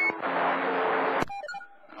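CB radio receiving a skip station: a short beep, then about a second of static hiss that cuts off with a click as the distant station unkeys, followed by a quick run of electronic roger-beep tones at several pitches.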